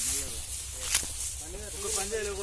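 Outdoor field recording dominated by a steady hiss and low rumble, typical of wind on the microphone. People are talking in the background, picking up more clearly in the second half, and there is a single sharp tap about a second in.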